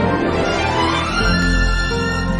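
Instrumental background music with held notes; a deep bass note comes in about a second in.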